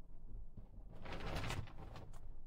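A brief rustle of things being handled and moved about on a craft desk, about a second in, over a low hum.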